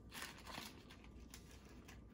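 Faint crinkling and rustling of the chip's packaging being handled, a few soft separate rustles.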